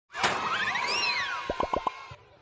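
Cartoon intro sound effects: a sharp hit, then whistle-like tones gliding up in steps and arching up and back down, then four quick rising plops near the end.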